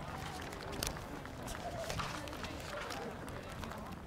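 Open-air ambience: a low, uneven rumble of wind on the microphone, with faint distant voices and a few small clicks.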